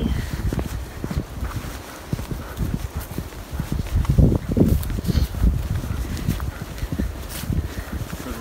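Footsteps of people walking along a dirt and grass trail, an irregular run of soft steps that is louder a little after four seconds in.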